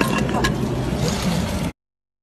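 Chunks of broken concrete and stone clicking and clattering as rubble is dug away by hand, over a steady low rumble. The sound cuts off suddenly near the end.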